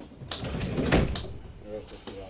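A train compartment's sliding door running along its track and shutting with a bang about a second in.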